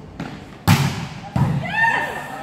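Volleyball hit twice in a rally, two sharp smacks about two-thirds of a second apart, the first the loudest, followed by short high squeaks of sneakers on the hardwood gym floor.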